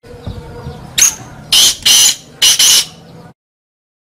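Black francolin (kala teetar) calling: one high note about a second in, then two pairs of loud high notes in quick succession. The sound cuts off suddenly a little after three seconds.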